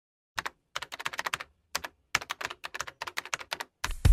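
Computer keyboard typing: a quick, irregular run of key clicks with short pauses, as text is typed into a search bar.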